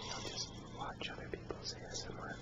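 A man whispering close to the microphone, his hissed s-sounds standing out, over a steady low hum and background hiss.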